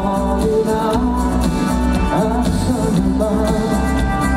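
Male pop singer singing into a microphone over pop accompaniment, with a bass line that pulses in a steady beat.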